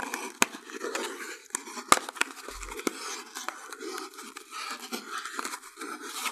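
Crochet cotton being wound around an inflated balloon: a steady scratchy rubbing of thread and fingers on the balloon's rubber, with two sharp clicks in the first two seconds.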